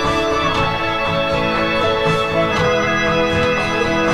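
Final chorus of a pop arrangement: a keyboard part played on a Nord stage keyboard, with sustained organ-like chords, over the full band backing at a steady, full level.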